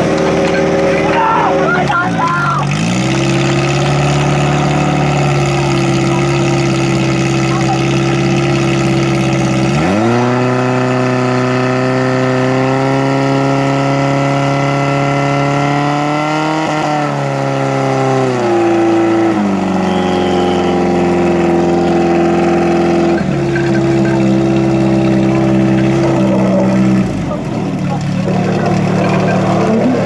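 Portable fire pump's engine running at high revs while pumping water from a tank out through the hose lines. Its pitch drops about two seconds in, climbs again around ten seconds, wavers, then falls in steps near the end.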